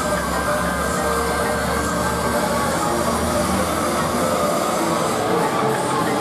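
Fairground thrill ride in motion: a steady mechanical rumble and rush from its swinging, rotating arm, with the deepest rumble in the first half.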